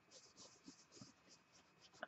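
Faint rubbing of fingertips on embossed cardstock, working polish into the raised pattern in quick short strokes, several a second.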